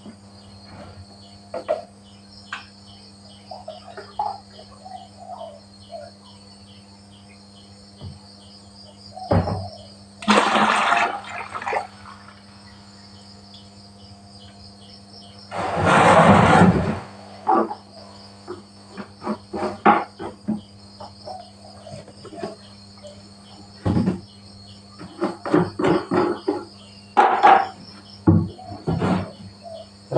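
Liquid pesticide and fertiliser mixture poured from a plastic measuring jug into a plastic bucket, a rush of liquid about ten seconds in and a longer one about sixteen seconds in, among small clicks and knocks of plastic containers being handled. Insects chirp steadily in the background.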